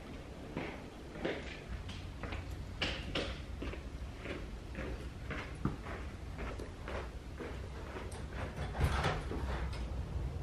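Footsteps of a person in sneakers walking on a hardwood floor, about two steps a second, with a louder knock near the end.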